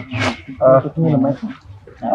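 People's voices talking, opening with a short breathy burst; a monkey call may be mixed in.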